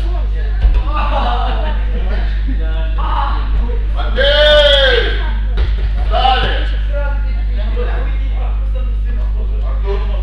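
Voices and chatter in a large hall over a steady low hum, with a sharp thud of a body hitting the wrestling mat near the start. About four seconds in, a loud, drawn-out voice cry rises and falls in pitch for about a second.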